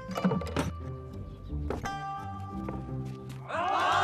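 Dramatic background music with low drum-like notes and several sharp knocks, then a crowd breaking into cheers and shouts about three and a half seconds in.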